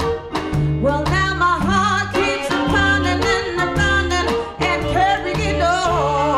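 Live blues band playing: a walking bass line and drums under a wavering, sustained lead line that is most likely a woman's voice singing without clear words.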